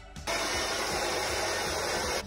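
Handheld hair dryer switched on about a quarter second in, then blowing steadily.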